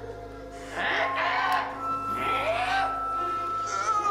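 Tense background music of long held notes, with a high note held steadily through the second half.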